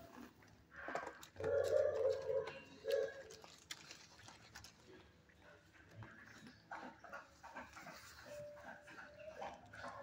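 A dog in a shelter kennel calling out: a loud drawn-out bark or howl about a second and a half in and a shorter one near three seconds, followed by softer scattered noises.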